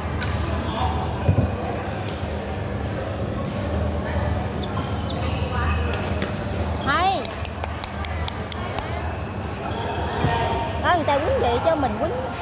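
Badminton rally on an indoor court: sharp racket strikes on the shuttlecock and short squeaks of court shoes on the court mat, the squeaks clustering about seven seconds in and again near the end.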